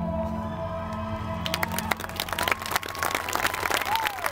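Marching band's brass and horns holding a final chord that fades away, then audience applause breaking out about a second and a half in, with a few whistles from the crowd.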